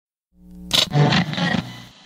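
A loud roar that swells in a third of a second in, is loudest just under a second in, and fades away toward the end.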